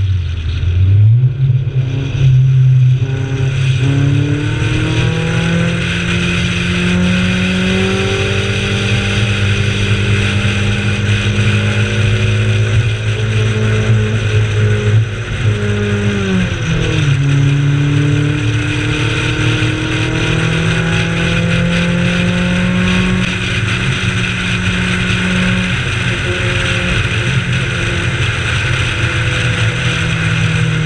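Honda CRX race car's engine driven hard, heard from the cabin: the note dips and climbs again in the first few seconds, rises slowly for a long stretch, drops sharply about halfway through, then climbs again, over steady wind and road noise.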